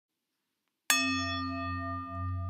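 A singing bowl struck once, about a second in, ringing on with a low hum and several clear higher tones that slowly fade and waver.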